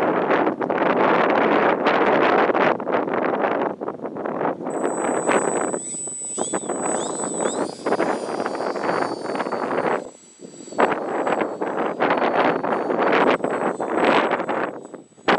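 Heavy wind buffeting the microphone in gusts. About five seconds in, the thin high whine of the model autogyro's electric brushless motor comes in, rising in pitch several times as it is throttled up for takeoff, and carries on under the wind.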